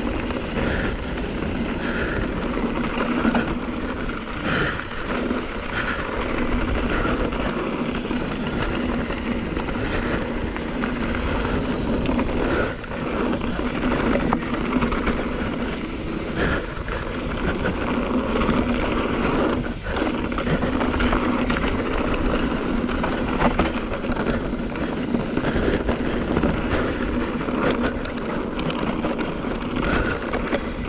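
Wind buffeting an action camera's microphone and knobby tyres rumbling over a dirt trail as a mountain bike rides along, under a steady low hum.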